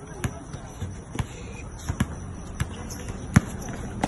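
Basketball being dribbled on an outdoor hard court: about five sharp bounces at uneven spacing, the loudest a little past three seconds in.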